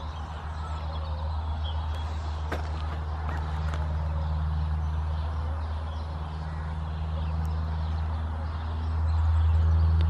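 A steady low engine drone, like vehicle traffic, growing louder near the end, with a few faint clicks over it.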